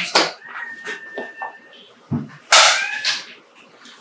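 A man crying: breathy sobs and a thin, high-pitched whimper held for over a second, then a louder sobbing outburst about two and a half seconds in.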